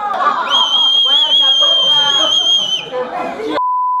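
Party chatter with a high, steady whistle held for about two seconds over the voices. Near the end the room sound cuts off abruptly and is replaced by a steady colour-bar test-tone beep.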